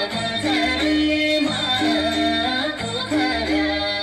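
Nepali folk song with singing over keyboard and bass, played at a steady dance rhythm, the melody moving in long held notes.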